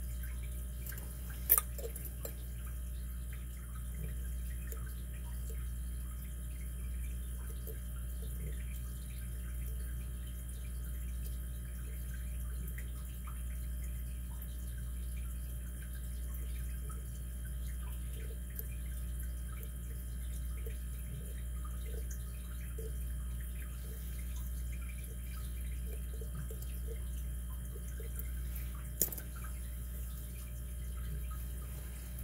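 Light scattered ticks of a lock pick working the pin tumblers of a pin-tumbler challenge lock with a KW1 keyway, over a steady low hum. Two sharp clicks stand out, one about a second and a half in and one near the end.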